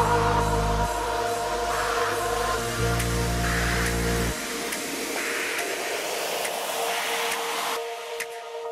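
Trance music in a breakdown: sustained synth chords over a heavy bass. The bass drops out about halfway, leaving high held chords with repeated airy swelling sweeps.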